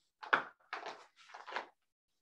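Writing strokes on a board: three short strokes in quick succession, ending a little before the two-second mark.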